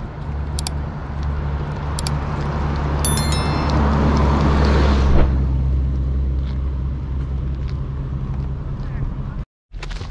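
A bus driving past on the road, its engine and tyre noise swelling to a peak about five seconds in and then fading over a steady low rumble. A brief high-pitched squeal about three seconds in.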